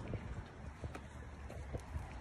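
Footsteps on asphalt, several short irregular steps, over a low steady rumble.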